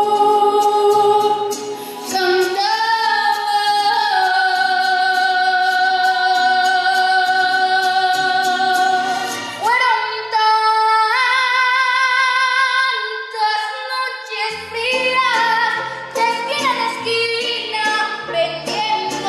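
A young girl's solo voice singing through a microphone, holding long notes. About ten seconds in, the singing changes to a boy's voice starting a new phrase.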